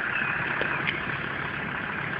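A car's engine running steadily, heard as a low, even hum.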